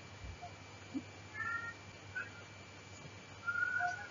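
Faint short animal calls, a few scattered chirps with the longest and loudest near the end, over a steady low hum.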